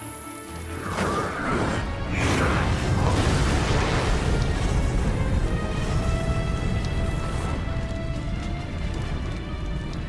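Background music over cartoon explosion sound effects: a blast starts about a second in and runs on as a long, loud, low-heavy rush of fire.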